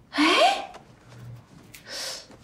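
A woman's gasp of dismay, breathy and rising in pitch, followed near the end by a short breathy exhale.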